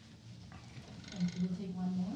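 A person's voice holding a steady low hum ("mmm") for about a second, starting about halfway in, after a moment of quiet room tone.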